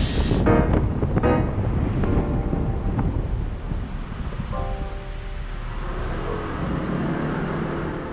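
Steady wind and road rumble from a car driving, picked up by a camera on its roof, with music laid over it. A short, sharp hiss sounds right at the start.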